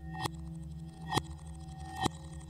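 Experimental electronic music made from manipulated recordings of a metal lampshade. Two sharp metallic strikes, about a quarter second in and again a second in, each ring on over a low, steady drone.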